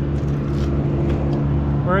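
An engine running steadily, a low even hum that holds one pitch throughout.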